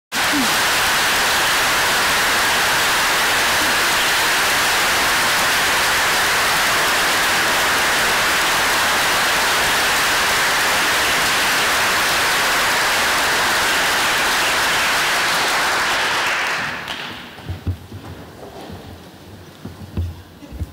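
Audience applauding steadily, then dying away about three-quarters of the way in. A few low knocks follow as the microphone stand at the lectern is handled.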